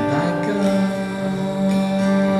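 Male voice singing one long held note over ringing acoustic guitar chords, with the note starting about half a second in.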